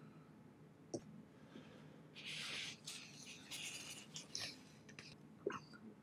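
Faint handling of a just-filled fountain pen: a light click about a second in, soft rustling through the middle, and another light click near the end.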